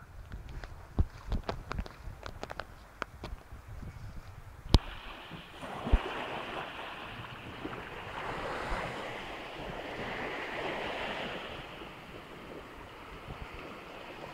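Crackling steps and snapping twigs through forest undergrowth, then, after a sharp click about a third of the way in, the steady rush of surf breaking on a beach, swelling a little in the middle.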